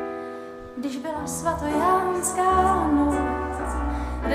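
A woman singing a slow melody while accompanying herself on a Nord Stage 2 stage keyboard. A sustained keyboard chord sounds at the start, the voice comes in about a second later, and a low bass line joins soon after.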